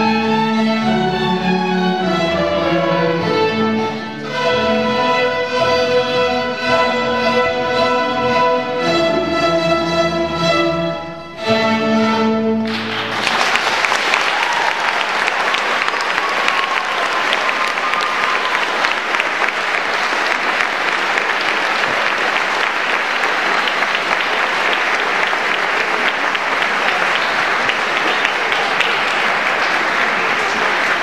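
Student string orchestra of violins and cellos playing the closing bars of a piece, ending on a final chord about thirteen seconds in. The audience then applauds steadily.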